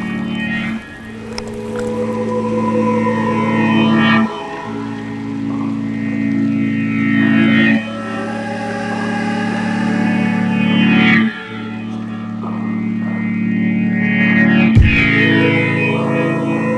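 Background music: sustained chords that swell in loudness and change about every three and a half seconds.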